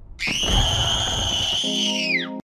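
A young girl's long, high-pitched scream, held on one pitch, starting just after the beginning over a low rumble. A sustained low musical chord comes in under it near the end.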